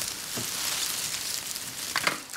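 Loose strands of magnetic videotape rustling and crackling as they move, a dense, steady, high crinkling hiss.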